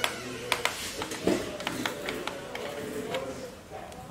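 Small screwdriver turning a screw out of a ThinkPad T470 laptop's bottom cover: a scatter of light clicks and taps of the tool against the screw and plastic case.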